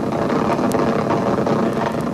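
Voyager 2's plasma wave instrument recording of dust particles striking the spacecraft as it crossed Neptune's ring plane, played back as audio: a steady rushing hiss with one faint click about a third of the way in.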